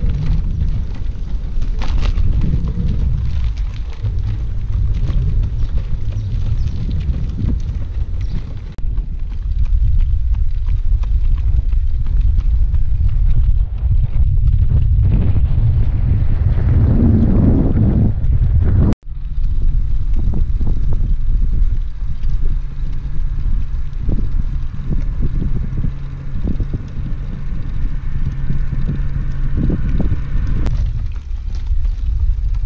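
Wind buffeting the microphone of a camera moving along the road with a bicycle, a loud, steady low rumble. It cuts out for an instant about two-thirds of the way through, then carries on.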